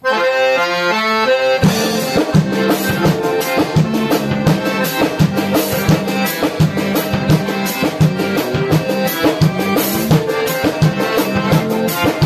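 A piano accordion opens the tune alone with a short melodic flourish. About 1.7 s in, the drum kit and the rest of the gaúcho band come in, playing an instrumental dance intro led by the accordion over a steady beat.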